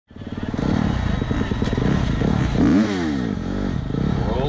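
Dirt bike engines running, with a rev that rises and falls a little past halfway.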